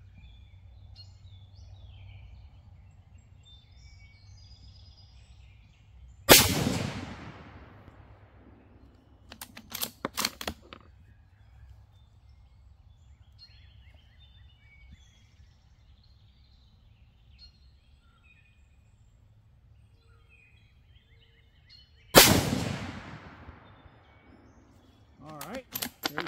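Two rifle shots from a Savage Axis II heavy-barrel bolt-action in 6mm ARC, about sixteen seconds apart, each a sharp crack with a long fading tail. A few seconds after the first shot the bolt is worked in a quick run of metallic clicks, and again near the end. Birds chirp faintly in the background.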